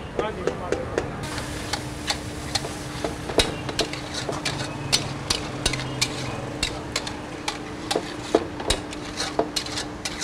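Beef and butter sizzling in a steel karahi while a metal spatula stirs the meat, clicking and knocking against the pan one to three times a second. The sizzle grows louder about a second in, and a steady low hum runs underneath.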